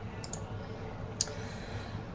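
Low background room noise with a few faint clicks; the clearest is one sharp click just over a second in.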